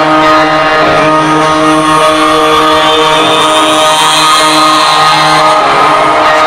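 Live rock band playing through a concert PA: a loud, sustained droning chord held without any beat, with a hiss up high that swells and rises partway through.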